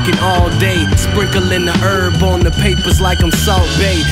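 Hip hop track: a rapped verse over a beat with a steady bass line.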